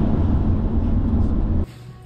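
Road noise inside a BMW's cabin on a wet highway in the rain: a loud, steady rumble of tyres and the running car. It cuts off suddenly near the end, giving way to a much quieter room with a faint hum.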